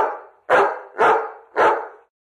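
A dog barking four times at an even pace, about two barks a second, each bark short and equally loud.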